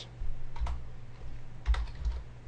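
A few keystrokes on a computer keyboard, typing a short word.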